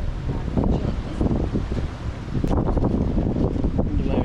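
Wind buffeting the microphone, a steady, loud low rumble.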